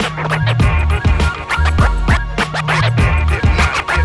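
Turntable scratching: a vinyl record on a Technics turntable pushed back and forth by hand under the needle, cut in over a drum beat with heavy bass. The scratches come as quick sweeping rises and falls in pitch, several a second.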